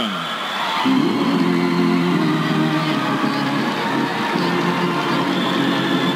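Organ music playing held chords, starting about a second in, over the noise of an arena crowd applauding.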